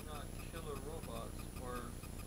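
Clockwork of wind-up tin toy robots ticking steadily as they run, with a voice also heard.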